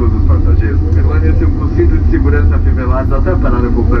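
Steady low rumble of a Boeing 777-300ER cabin as the jet rolls along the runway after landing, spoilers up, with a man's cabin announcement in Portuguese over the PA on top of it.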